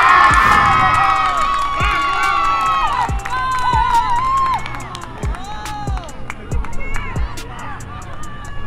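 Players and spectators shouting and cheering together to celebrate a goal, loudest at the start and dying down to scattered calls after about four seconds.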